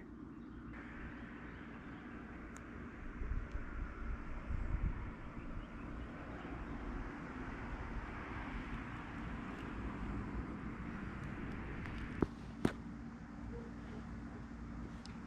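Outdoor background noise: a steady low rumble and hiss, swelling briefly a few seconds in, with two sharp clicks close together near the end.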